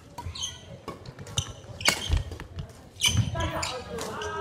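Badminton rally on a wooden gym court: sharp racket strikes on the shuttlecock and footfalls on the floor, the loudest hit about two seconds in. Players' voices follow near the end as the rally stops.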